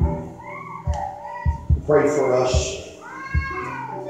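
A raised voice with no clear words, its pitch gliding, over background music: a held note and irregular low thumps.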